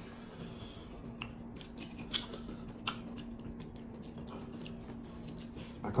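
Close-miked eating sounds: soft, wet chewing and mouth clicks as amala (fufu) with egusi soup is eaten by hand, with a few sharper clicks scattered through.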